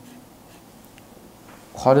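Felt-tip marker drawing and writing on paper: a faint scratching.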